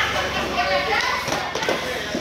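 Several people talking and calling out at once while cardboard boxes are carried and set down, with a couple of short thuds in the second half.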